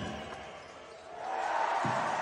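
Basketball game sound: arena crowd noise that swells from about halfway through, with a short dull thud near the end.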